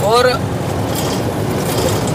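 A vehicle's engine and tyres heard from inside the cabin while driving over a dirt road: a steady low rumble with road noise.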